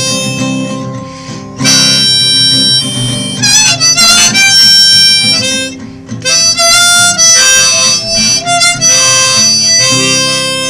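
Harmonica in a neck rack playing a loud solo line of held and wavering notes, with two short breaks, over acoustic guitar accompaniment.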